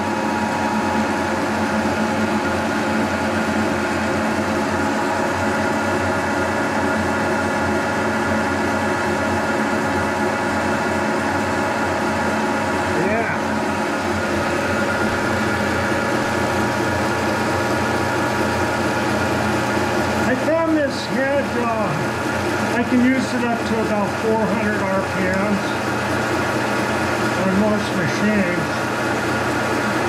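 Brown & Sharpe milling machine running its spindle at about 250 RPM, spinning a Wohlhaupter boring and facing head with the head's automatic feed engaged and no cut being taken. It makes a steady gear-driven drone with several constant whining tones, and a low hum joins about halfway through.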